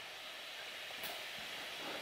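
Quiet room tone: a faint steady hiss with one small click about a second in.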